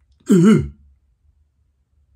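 A man clearing his throat once, a short voiced sound of about half a second with a pitch that goes down and up twice.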